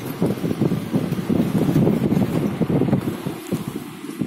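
Wind buffeting the microphone at the open window of a moving car, a low rumbling rush with rapid flutter that eases off near the end.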